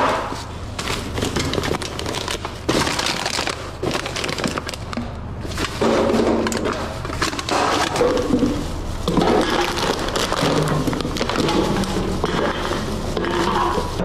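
Plastic garbage bags rustling and crinkling as trash is dug through by hand, with scattered clicks and knocks of plastic bottles and cans being handled.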